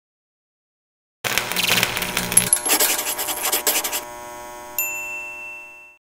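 Animated logo sting: after about a second of silence, a busy, sparkling clatter of sound effects over a music bed, then a bright bell-like ding near the end that rings and fades away.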